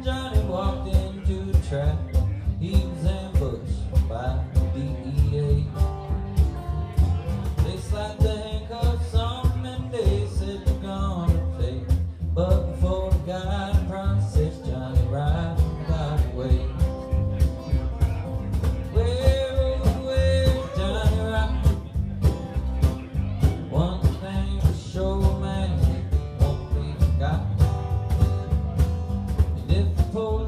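A live country band playing a song: guitar and upright bass over a steady beat, with a man singing in stretches.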